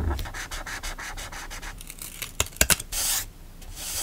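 Fine-tip pen scratching quick short strokes on grid paper for about two seconds, then a few sharp taps. Then a hand rubs twice across the paper, pressing a sticker flat.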